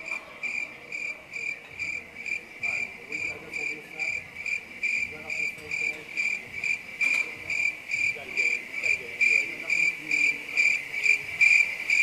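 Cricket chirping in a steady regular pulse, about three chirps a second, growing louder toward the end.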